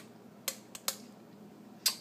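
A few light clicks of a spoon against a small metal mesh strainer as blueberry purée is pressed through it, the loudest just before the end.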